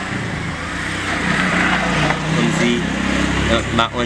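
Steady outdoor background noise, an even hiss with no clear single source, with faint voices coming in during the second half.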